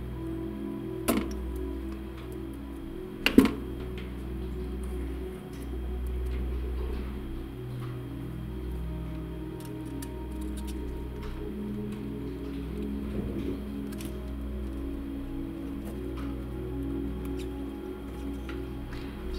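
Background music, with faint ticks of fine craft wire being drawn through glass beads on a metal cuff bracelet. Two sharp clicks come about one and three seconds in; the second is the loudest sound.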